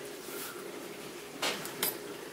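A stainless mesh strainer of kilned malted barley being picked up off a metal baking sheet: two brief clatters of metal and grain, about a second and a half in and just before the end.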